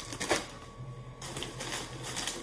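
Plastic shopping bag and snack packaging rustling and crinkling as items are pulled out, with several sharp clicks, the strongest near the start.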